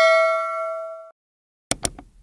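Bell-ding sound effect ringing out with several steady tones, fading, then stopping abruptly about a second in. A quick double mouse-click sound effect follows near the end.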